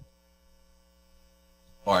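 Near silence with a faint, steady electrical mains hum from the recording, and a man's voice coming back in near the end.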